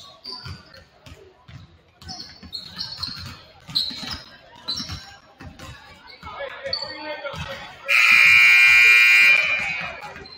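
Several basketballs bouncing on a hardwood gym floor, with short high sneaker squeaks. About eight seconds in, the gym's scoreboard horn sounds loudly for about a second and a half.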